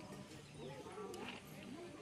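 Faint voices in the background, short sounds that rise and fall in pitch, with a few light clicks.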